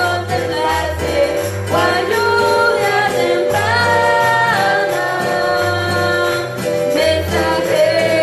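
A woman sings a Spanish-language worship chorus into a microphone over a live band of acoustic guitar and keyboard, with a melody that holds and bends over a steady bass line.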